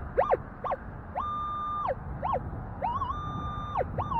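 Metal detector target tones as the coil sweeps over a buried target: a few short beeps that swoop up and straight back down, and two longer high beeps held steady, one about a second in and one near the end. The high tone marks a high reading that the detectorist takes for a decent target.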